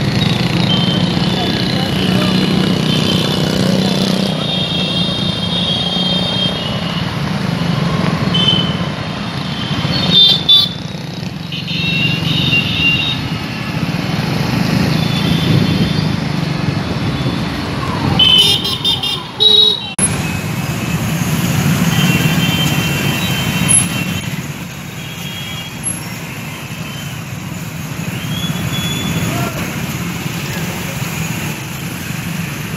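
Busy city road traffic: a steady mix of motorcycle, auto-rickshaw and car engines, with many short horn toots throughout and louder bursts of honking about ten and nineteen seconds in.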